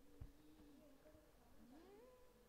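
Near silence with a faint, wavering meow-like call that rises in pitch near the end, and a soft click shortly after the start.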